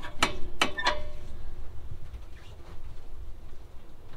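Three sharp metallic clicks in the first second, the last ringing briefly, as parts of an old fuse and breaker panel are touched and handled, then a faint low rumble.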